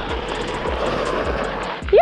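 Mountain bike tyres rushing over a gravel trail at speed, with wind on the handlebar-mounted microphone. The rushing swells and then fades near the end, just before a shout. Light background music with a steady beat runs underneath.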